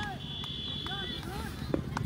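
Faint, distant voices of players and spectators calling out across an open cricket ground. A steady high tone sounds for about a second near the start, and there is a single sharp click near the end.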